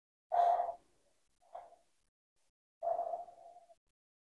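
A toddler breathing in at the mouth of a small glass dropper bottle held to her nose, in three short sniffs or breaths; the last one is the longest.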